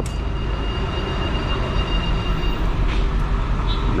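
Steady low rumble of engine, road and wind noise while riding a motorcycle slowly in town traffic. A thin, steady high-pitched squeal rides over it for about the first two and a half seconds.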